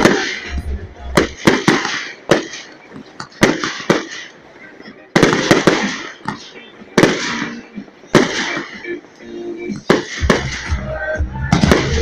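Aerial fireworks shells bursting in a display: a string of sharp bangs, roughly one a second, some coming in quick pairs.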